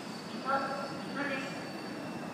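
A 485 series electric train pulling slowly into a station platform as it arrives.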